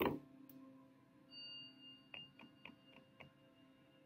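Hands coming down onto a wooden table with a single sharp knock, then about five light taps of fingers on the cards and tabletop about two to three seconds in, over faint background music with a brief high tone.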